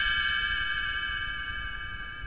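Read-along page-turn chime: one struck chime ringing out with several clear, steady tones and fading slowly. It is the signal to turn the page.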